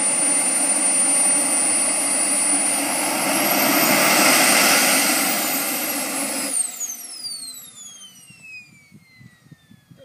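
Model jet's miniature turbine engine running on the ground, its high whine climbing briefly and settling back. About six and a half seconds in the engine noise stops suddenly as it is shut down, and the whine falls away steadily as the turbine spools down.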